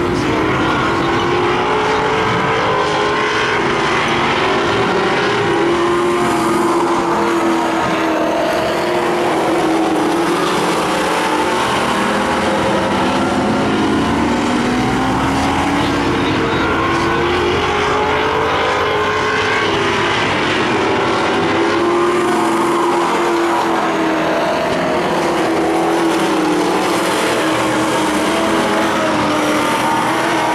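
A pack of Late Model Stock race cars' V8 engines running hard around a short oval. Several engine notes overlap and rise and fall in pitch again and again as the cars accelerate down the straights and lift for the turns.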